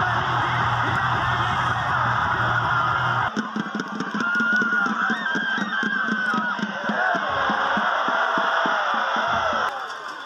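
Loud stadium crowd cheering and yelling with music. About three seconds in, the sound changes abruptly to a steady drumbeat, a few beats a second, under the crowd's voices, and it changes again just before the end.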